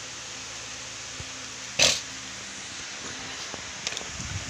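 Steady background hiss, with one short breathy burst about two seconds in and a few faint ticks near the end.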